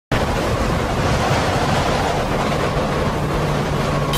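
Loud, steady rushing noise like wind, with a deep rumble beneath, from an intro sound effect. A low steady hum joins about halfway through.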